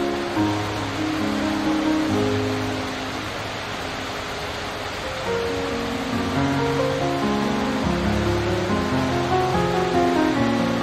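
Slow instrumental music with long held notes, over the steady rush of water cascading down a stepped stone waterfall.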